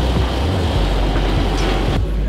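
Loud, steady low rumble with a fine rattling noise running through it.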